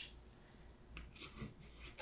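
Faint scraping and rubbing of a metal palette knife against wet acrylic paint and the canvas, a few soft scrapes about a second in.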